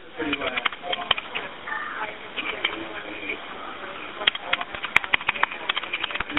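Recorded 911 emergency call over a phone line: line noise and repeated clicks, with faint, indistinct voices in the background.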